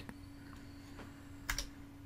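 Two quick clicks from a computer mouse or keyboard about one and a half seconds in, with a fainter click near one second, over a faint steady electrical hum.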